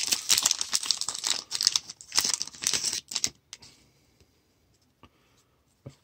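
Foil wrapper of a Pinnacle baseball card pack crinkling as it is torn open and the cards are pulled out. The crackling stops about three seconds in, leaving a few soft clicks of cards being handled.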